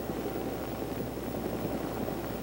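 Steady, fairly quiet helicopter cockpit engine noise: a low hum under an even hiss, with a thin steady whine.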